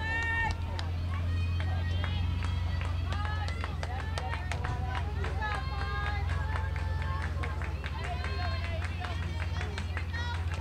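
Raised voices of players and spectators calling and cheering from around a softball field, many short high shouts overlapping, with scattered sharp ticks over a steady low hum.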